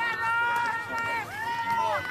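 A high-pitched voice shouting two long drawn-out calls, the first held level for about a second, the second rising and then falling away at the end.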